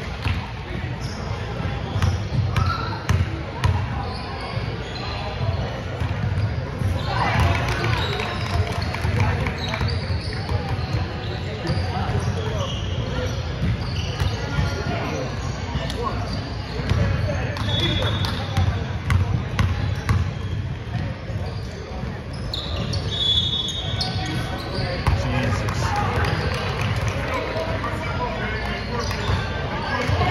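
A basketball bouncing and being dribbled on a gym's hardwood court during a game, with players' and spectators' voices in the background.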